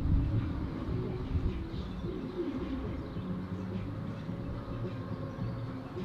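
Outdoor ambience: a steady low rumble, loudest at the very start, with a bird calling over it a couple of times.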